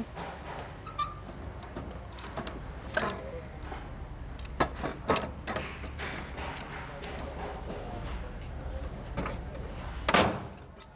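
Metal operating lever worked in the switch mechanism of an ABB medium-voltage ring main unit, giving scattered metallic clicks and knocks as it is fitted and turned, over a steady low hum.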